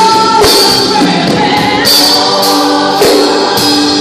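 Live gospel worship music: a woman sings lead into a microphone with other voices singing along, over regular percussion hits.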